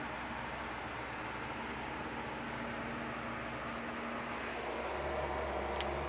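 Cabin noise of a Ferrari GTC4Lusso T under way, a steady hush with the low hum of its twin-turbo V8 beneath. The engine hum grows louder about five seconds in.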